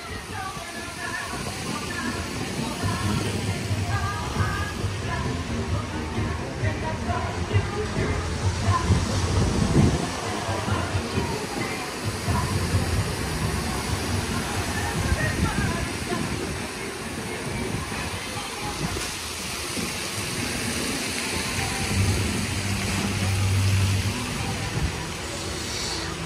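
A spinning theme-park ride in motion, heard from a rider's seat: a steady rushing noise with a low machine hum that comes and goes, under background music and faint voices.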